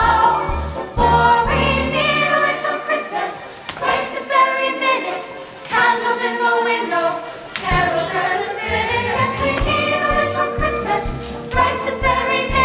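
Mixed choir of male and female voices singing with accompaniment. The low end of the accompaniment falls away for a few seconds in the middle, then comes back.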